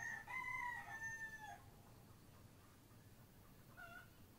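A bird's drawn-out call lasting about a second and a half, with a short, fainter call near the end.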